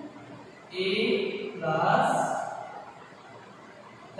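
A man's voice says a few words, starting about a second in and lasting about a second and a half, then faint room tone.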